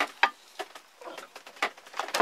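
A few sharp clicks and knocks of a homemade flat-top mole trap's metal spring and wooden block being handled against a wooden table, the loudest at the start and a quarter-second in, another about one and a half seconds in.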